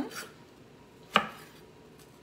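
Kitchen knife cutting a lemon on a wooden cutting board, with one sharp knock of the blade against the board about a second in.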